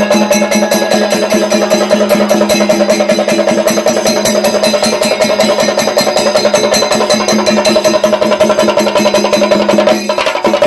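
Procession drum ensemble playing fast, dense strokes with ringing cymbals over a steady held tone, loud and unbroken.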